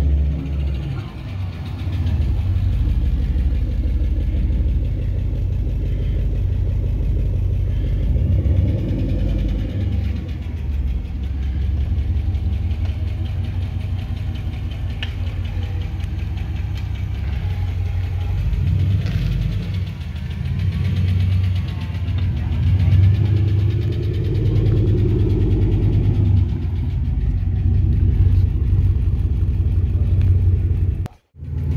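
Chevrolet Impala SS's LS4 V8 running with a low exhaust rumble as the car is driven slowly, the engine note swelling and easing a little with the throttle.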